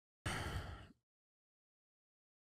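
A short breath into a close microphone, under a second long and fading out, with silence around it.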